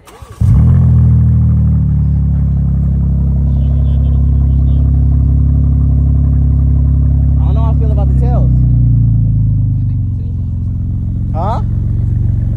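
BMW M4's twin-turbo inline-six engine starting up, catching with a brief rev, then running at a steady high idle. The idle settles lower about ten seconds in.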